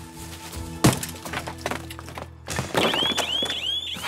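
One loud, sharp blow from a swung wooden stick about a second in. About two seconds later an electronic alarm starts up, a repeating rising whoop about three times a second.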